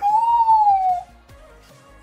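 A young woman's high-pitched, drawn-out squeal of excitement, sliding slowly down in pitch for about a second, then breaking off.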